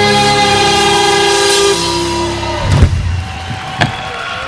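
A live rock band's final chord, with guitars, held and ringing out as the song ends. Two heavy closing hits follow, the first about three seconds in and the second near the end.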